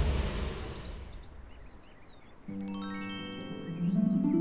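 Background music for an animated cartoon: a noisy sound fades away, then about halfway through a soft music cue comes in with held tones and high tinkling chimes, rising in pitch toward the end.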